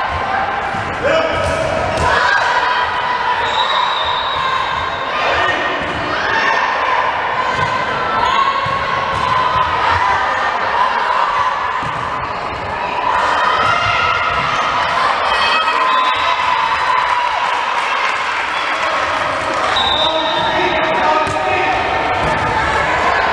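Volleyball rally in a gymnasium: the ball is struck repeatedly with sharp slaps and thuds, under steady shouting and calling from players and spectators.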